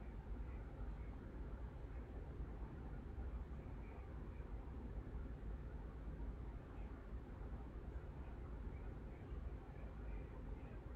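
Low, steady background noise with no distinct events: room tone and microphone hiss, heaviest in the low rumble.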